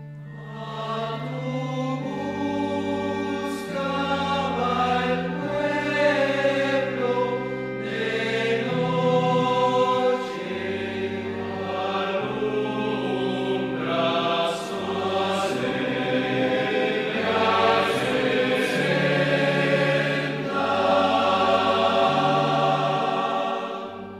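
Choir singing a communion hymn over long held low accompaniment notes that change every second or two.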